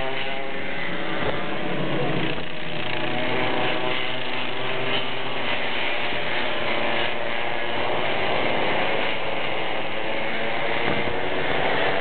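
Several small racing kart engines running together, their overlapping pitches rising and falling steadily.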